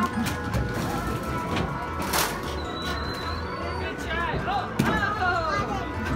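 Arcade game-room ambience: electronic game music and background voices, with a sharp knock about two seconds in and another near the end.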